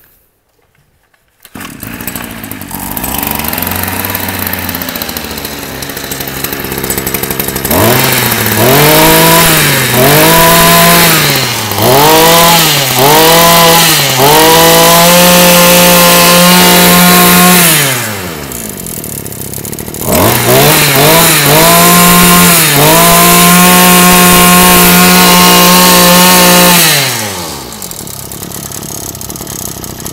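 Komatsu 30 cc two-stroke brush cutter engine catching on the pull-start about a second and a half in and idling. It is then revved with four quick throttle blips, held at high revs, and let drop back to idle. It is revved and held high a second time, then settles back to idle near the end.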